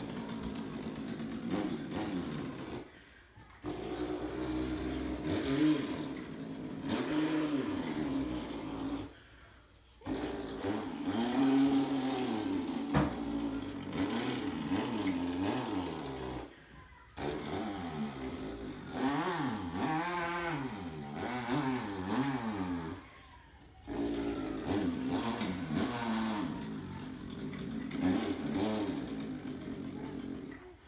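A person imitating a chainsaw with his voice: a buzzing drone whose pitch swoops up and down like a revving engine, in about five long stretches with short pauses for breath between them.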